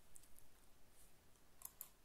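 Near silence with a couple of faint, sharp clicks near the end, as the presentation is advanced to the next slide.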